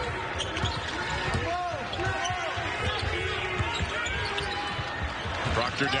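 Basketball being dribbled and sneakers squeaking in short, repeated chirps on a hardwood court, over a steady arena crowd murmur.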